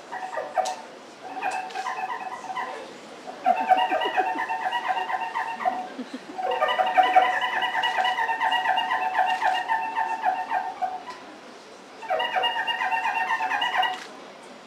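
A man's high falsetto voice wailing without accompaniment in five bursts, the longest about four seconds long in the middle, with a wavering pitch.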